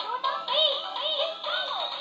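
Electronic musical baby toy, set off by a child's hand, playing a chirpy synthesized tune of quick notes that rise and fall in pitch.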